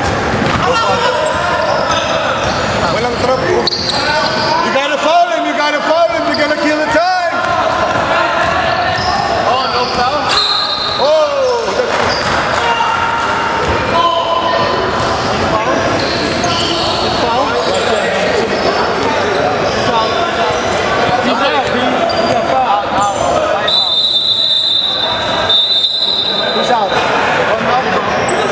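Basketball game in a gym: the ball bouncing on the hardwood and players and spectators calling out, echoing in the large hall. Near the end a referee's whistle blows, held for about two seconds.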